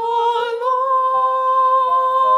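An opera singer holding one long high sung note with gentle vibrato, rising a little about half a second in, over soft sustained accompaniment.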